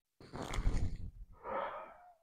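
A man breathing hard during a breathing exercise: a long, forceful exhale, then a shorter breath about a second and a half in.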